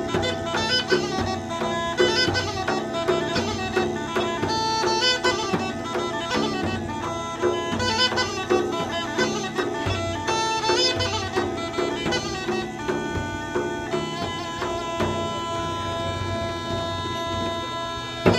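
Bulgarian gaida, a sheepskin bagpipe, playing a fast ornamented tune over its steady drone, with a frame drum beating along. The melody settles into longer held notes over the last few seconds and the music stops sharply at the end.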